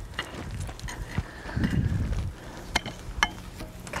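Large rocks being set by hand into a dirt slope for a retaining wall: a few short knocks of stone and tool, with a low scraping rumble about halfway through as a rock is worked into place.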